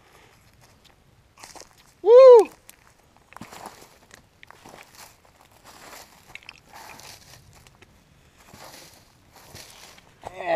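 A man's short, high whoop about two seconds in, rising then falling in pitch. After it, irregular crunching footsteps in dry leaf litter as he walks about.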